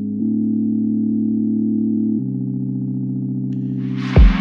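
Background music of sustained electronic chords, changing to a new chord about a quarter-second in and again about two seconds in, with a hiss swelling up near the end.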